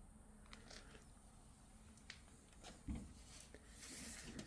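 Near silence: room tone with a few faint clicks and one soft thump about three seconds in.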